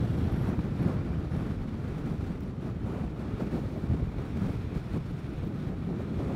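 Steady wind rush and buffeting on a helmet-mounted microphone while riding a Vespa GTS 300 scooter at road speed, with the scooter's running and road noise underneath.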